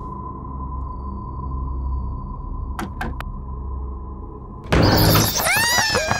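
Low, eerie rumbling drone with three sharp clicks about halfway through. Near the end, a sudden loud rush as the big doors burst open and a swarm of cartoon bats pours out, squeaking in high chirps that rise and fall.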